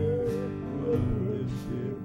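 Acoustic guitar strummed in a steady rhythm, accompanying a woman singing a gospel hymn.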